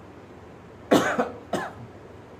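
A man coughs twice in quick succession about a second in, the first cough the louder.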